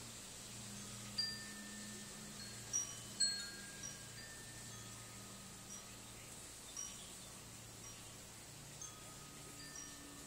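Chimes ringing: scattered single ringing notes at several different pitches, struck irregularly, with the loudest strikes about one and three seconds in, over a faint low hum.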